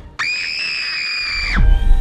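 A single high-pitched shriek from an animated character, held steady for about a second and a half, starting sharply just after the start and cutting off before the end.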